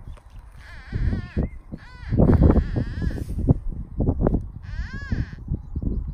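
Hands and a red-handled digging trowel breaking up a plug of soil to find a metal-detector target: crumbly rustling and dull knocks of earth, loudest about two seconds in. A few wavering, high-pitched animal-like calls sound over it, about a second in and again about five seconds in.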